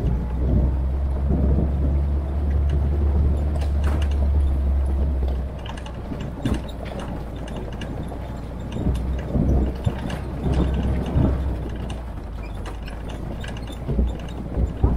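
Military jeep driving along a gravel track: engine running under a heavy low rumble, with rattles and knocks from the body and fittings. The rumble is loudest for the first five seconds or so, eases, then swells again around nine to eleven seconds.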